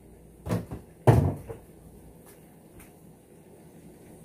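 Two knocks in the kitchen about half a second apart near the start, the second louder, followed by a few faint clicks.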